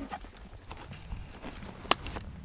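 Compression straps on a Condor 3-Day Assault Pack being fastened: faint rustling and a few small clicks, then one sharp click near the end.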